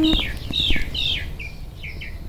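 A songbird calling: a run of short, high, down-slurred chirps, about three a second, growing fainter toward the end.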